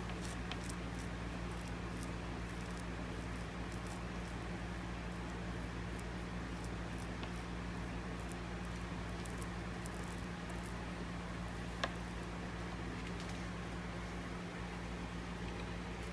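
Faint soft ticking and squishing of glue-soaked sinew being pressed and smoothed into the back of a bow by hand, over a steady low electrical hum. A single sharp click about twelve seconds in.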